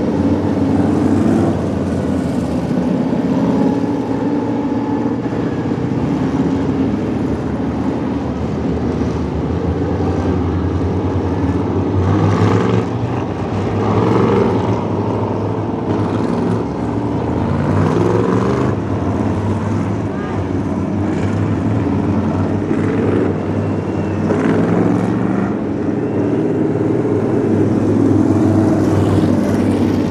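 Race car engines idling and running slowly on the track under a caution, a steady low drone with the odd short rise in pitch from a throttle blip.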